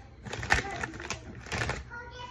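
A few short clicks and knocks, the loudest about half a second in, from a small utensil working cream cheese into a mini sweet pepper.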